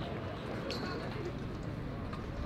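Outdoor ballfield ambience: a low steady rumble with faint distant voices, and one sharp click a little under a second in.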